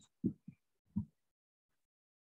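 A man's voice: three short, low syllables spoken haltingly within the first second, each cut off sharply.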